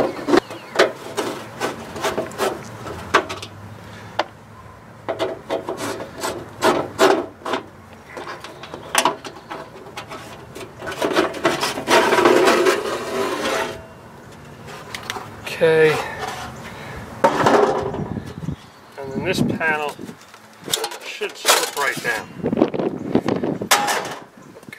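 A screwdriver backs screws out of a vintage Airstream's aluminum water-heater access panel, then the ribbed aluminum panel is worked loose and pulled off, metal scraping and squeaking on metal. A run of clicks and scrapes, with a longer rasping stretch near the middle.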